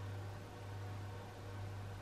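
Quiet room tone: a steady low hum under a faint hiss.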